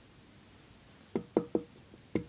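Three sharp knocks in quick succession about a second in, each with a short hollow ring, a knock at the door announcing a visitor.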